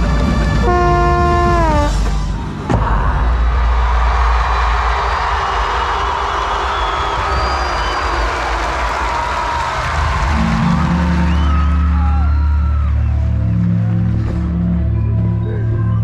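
Drum corps show music: a loud brass chord that ends in a downward fall, cut off by a sharp hit nearly three seconds in, then a sustained noisy wash, and a low steady electronic drone that comes in about ten seconds in.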